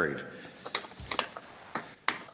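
Computer keyboard typing picked up by a participant's live microphone on a video conference call: an irregular run of key clicks starting about half a second in.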